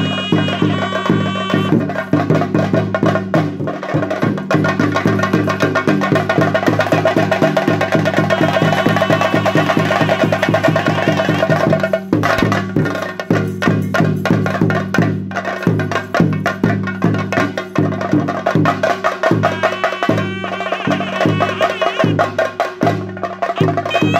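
Theyyam drumming on chenda drums, rapid strokes in a fast, driving rhythm with a wavering high melody line over it. The drumming thins to more spaced, separate strokes about halfway through.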